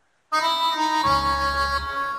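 Yamaha arranger keyboard playing a D minor chord (D, F, A) in a sustained, reedy voice, starting about a third of a second in; a deep bass note joins about a second in and the chord fades near the end.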